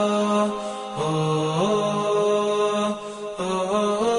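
Solo vocal chant under the advert: one voice holding long, melismatic notes that step up and down in pitch, with short breath pauses about half a second in and about three seconds in.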